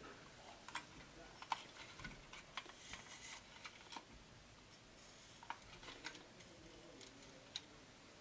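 Mostly quiet, with faint scattered clicks and light handling sounds as a curling iron is worked into a section of hair, its clamp and barrel clicking now and then.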